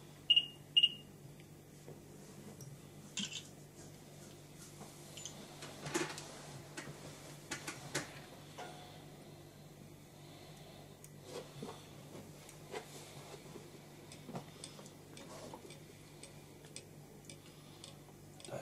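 Two short, high electronic beeps in quick succession in the first second, followed by scattered faint clicks and taps of hands and tools working at a fly-tying vise.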